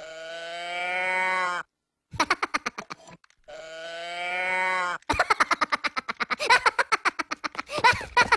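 A cow-in-a-can 'moo can' toy lets out two long moos, one at the start and one about three and a half seconds in. Between them a Minion giggles, and from about five seconds in he breaks into a long fit of rapid laughter.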